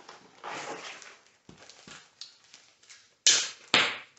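Rustling of a cardboard pancake-mix box and the plastic bag of dry mix inside it as the bag is pulled out, with a few small clicks, then two loud short crinkles of the plastic bag near the end as it is opened.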